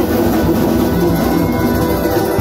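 Live folk-punk band playing loud and steady: mandolin and guitar strumming over a drum kit.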